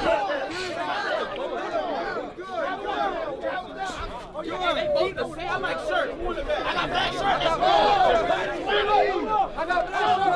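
Crowd of spectators chattering and calling out, many voices overlapping, around a street boxing match.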